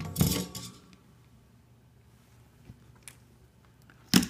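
A brief metallic clatter at the start as soldering tools are set down, ringing for about half a second. After it the bench is quiet apart from two faint clicks near the end.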